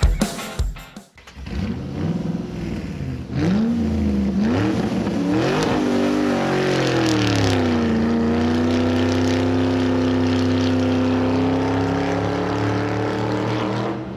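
Car engine sound effect: the engine revs up and down in pitch a few times, as if pulling through the gears, then settles into a steady cruising drone. Drum music ends just before it.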